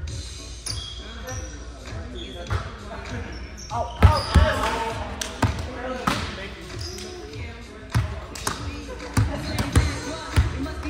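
Volleyball rally on a hardwood gym court: a string of sharp slaps as players' forearms and hands strike the ball, the loudest about four seconds in. Short high squeaks come early on, from shoes on the floor, and players call out.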